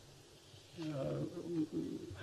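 A man's drawn-out hesitation sound, "uh", spoken into a microphone. It starts about a second in, after a near-silent pause.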